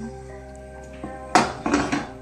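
Background music with held notes, and about a second and a half in a loud scraping clatter of a wooden spoon against a stainless steel saucepan as thick chocolate fudge mixture is stirred.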